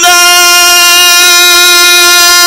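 A male Quran reciter's voice, amplified through a microphone, holding one long, steady high note in melodic recitation.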